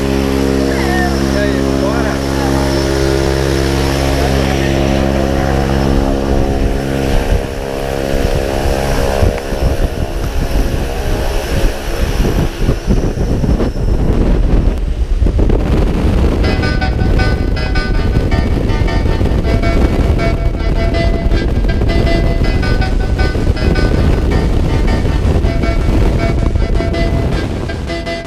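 Propeller aircraft engine running steadily with voices over it; about halfway through, the engine sound gives way to music with a steady beat.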